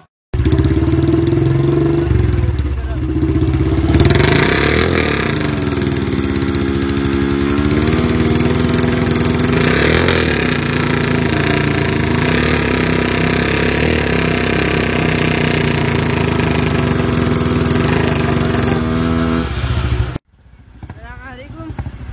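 A motorcycle engine running loudly, its revs rising and falling a couple of times. The sound cuts off abruptly near the end.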